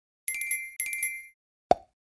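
Cartoon sound effects: two short twinkling chimes, one just after the other, then a single sharp pop near the end as the paint bottle caps flip open.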